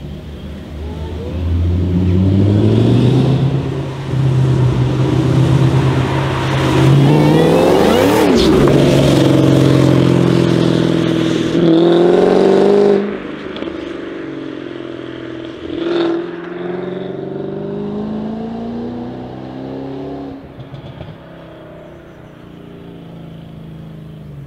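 Ford Mustang accelerating hard, its engine revving up in repeated rising pulls through the gears. It is loud through the first half, then drops off suddenly and fades as the car pulls away, with one short sharp blip along the way.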